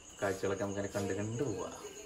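Crickets chirping in a steady, evenly pulsing high trill, under a man's voice talking.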